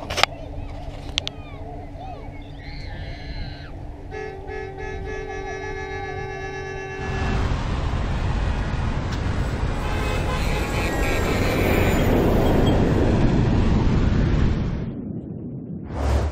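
Sound effects for an animated channel logo: held electronic tones that thicken into a horn-like chord about four seconds in, then a loud rushing whoosh from about seven seconds in that swells and fades out near the end.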